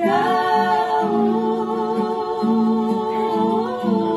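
Women singing a Tongan gospel song along with recorded gospel music, holding long sustained notes with vibrato. The melody steps up near the end.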